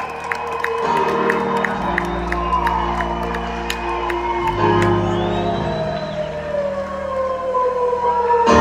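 Live band playing a spacey instrumental passage over sustained chords, with long gliding tones, one sliding slowly downward over several seconds.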